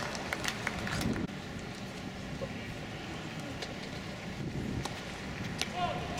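Tennis stadium crowd murmuring with distant voices, broken by a few sharp knocks of a tennis ball struck by rackets during a rally, several in the first second and more near the end.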